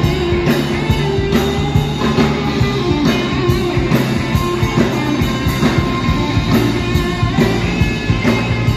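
Live rock band playing loud through the PA: electric guitar and drum kit with a steady beat about twice a second.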